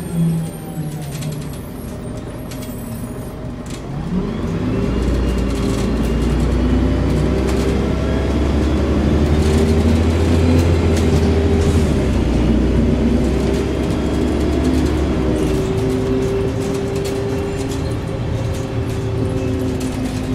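Volvo Olympian double-decker bus's diesel engine heard from the upper deck as the bus moves. It runs quieter for the first few seconds, then from about four seconds in the engine note climbs and a deep rumble builds as it pulls away. The rumble holds through the middle and eases after about fifteen seconds.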